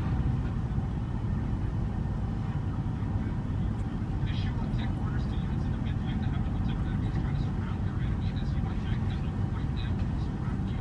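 Steady low rumble of a river cruise ship under way, with wind and water noise.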